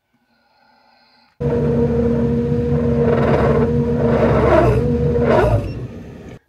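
Claas Dominator combine harvester with its threshing drum choked with straw, engaged again: loud, steady machine running with a constant whine cuts in suddenly about a second and a half in. It drops in level near the end.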